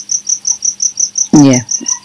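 A cricket chirping steadily: short, high, evenly spaced chirps at about seven a second.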